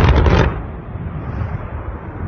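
Explosive volcanic eruption: a sudden loud blast, followed by a continuing rumble that slowly fades.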